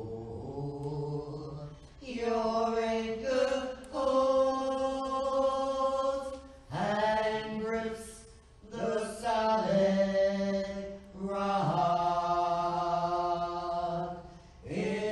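A singer performing church special music, slow sung phrases of long held notes, each lasting two to four seconds with short breaks between.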